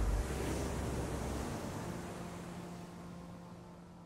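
A steady rushing noise with a faint low hum underneath, fading gradually throughout.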